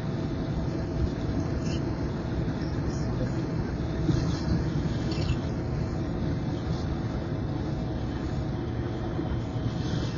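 Steady cabin noise of a car cruising at highway speed: a low, even rumble of tyres on the road surface mixed with engine and wind noise.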